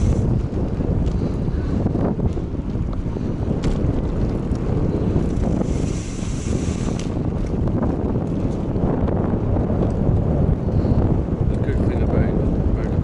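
Wind buffeting the microphone of a camera on a moving bicycle: a steady, loud, low rumble with a few faint knocks from the ride over brick paving.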